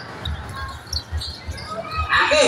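Basketball being dribbled on a concrete court: a quick run of dull low thuds.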